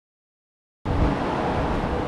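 Silence, then a little under a second in the sound cuts in suddenly to a steady rushing background noise with a low rumble: shop background noise with handling noise on the microphone.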